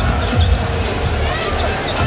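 A basketball being dribbled on a hardwood court, with thumps near the start and about half a second in, over arena crowd noise.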